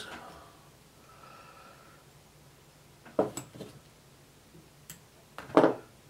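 Quiet hand work at a fly-tying vise as tying thread is wrapped onto the hook shank: a few small clicks and ticks, the loudest one near the end.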